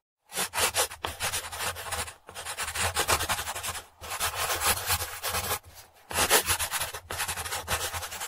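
Drawing pencil scratching quickly over sketchbook paper in runs of dense back-and-forth strokes, with brief pauses every couple of seconds as the hand lifts.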